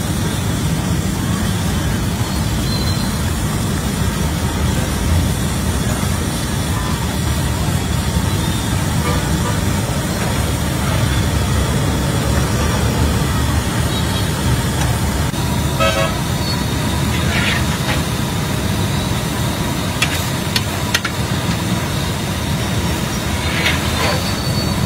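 Steady street traffic rumble, with a few short vehicle horn toots in the second half and indistinct voices.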